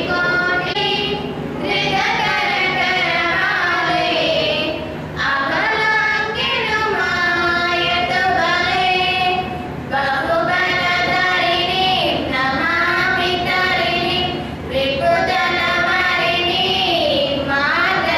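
Two young girls singing a song together into a handheld microphone, in long held phrases with short breaks between them.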